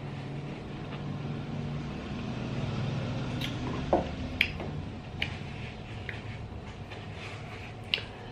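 Wet mouth clicks and smacks from chewing sour marian plum (thanh trà), a few short ones between about three and five seconds in, over a steady low hum.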